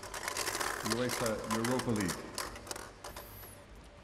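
Small plastic draw balls clicking against one another and the bowl as one is picked out and handled: a rapid run of light clicks over the first three seconds, thinning out near the end. A man's voice is heard briefly in the middle.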